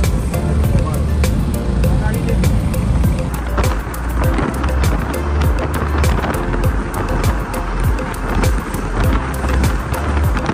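Background music with a steady beat and a heavy bass line.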